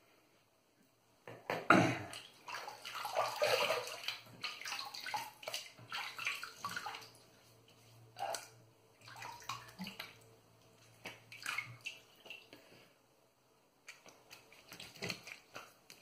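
Hands scooping and splashing water from a bathroom sink onto the face to rinse off shaving lather. The splashing comes in bursts: a loud, busy stretch in the first several seconds, scattered splashes after that, a short pause, then more splashing near the end.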